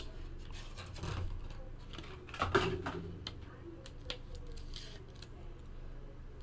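A trading card and a rigid clear plastic card holder being handled: faint scattered clicks and rustles, loudest about two and a half seconds in.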